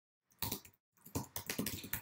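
Typing on a computer keyboard: one keystroke about half a second in, then a quick run of keystrokes as a line of code is typed.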